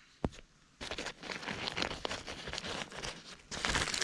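Tarp, groundsheet and sleeping-bag fabric rustling and crinkling as a person shifts around inside a low tarp shelter, with one sharp click about a quarter second in. The rustling starts just under a second in and gets louder near the end.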